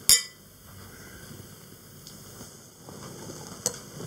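Two cut-glass wine glasses clinking together once in a toast: a single sharp, bright chink with a brief ring right at the start.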